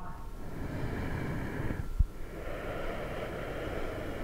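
A woman's slow, deep breathing close to the microphone: two long breaths, with a small click between them about two seconds in.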